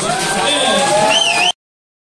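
Live blues band playing, with a held, rising pitched note that wavers near the end, over crowd noise; the sound cuts off suddenly about one and a half seconds in.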